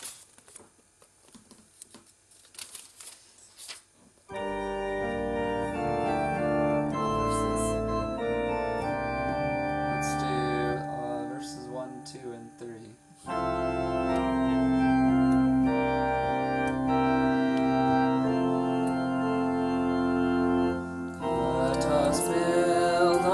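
Electronic keyboard on an organ sound playing a hymn introduction in sustained chords. It starts about four seconds in, after a few seconds of faint handling clicks, and pauses briefly about two-thirds of the way through.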